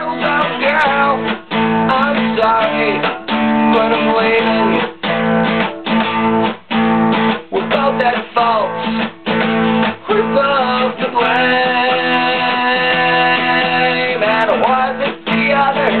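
Acoustic guitar strummed in steady chords, with frequent short breaks between strokes, while a man's voice sings along in places.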